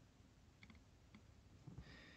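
Near silence: room tone with a few faint light clicks, small handling noises of a plastic scale model being worked with a cotton swab.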